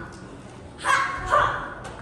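A child's voice imitating a dog, giving two short yapping barks about half a second apart.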